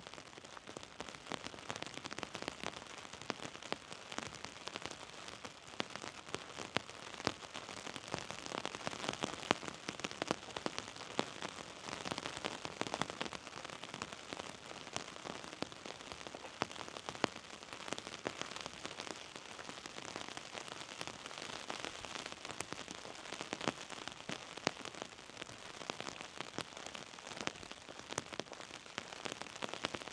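Light rain pattering steadily, with many separate drops ticking sharply over the even hiss.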